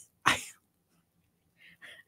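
A single short, sharp burst of breath from a person about a quarter second in, followed by faint breath noise near the end.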